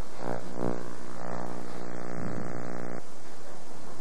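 A steady buzzing hum with many even overtones, unchanging in loudness, that cuts off abruptly about three seconds in.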